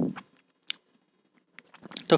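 A pause between spoken sentences: the end of a man's word, then near silence broken by one faint click just under a second in and a few soft ticks just before speech resumes.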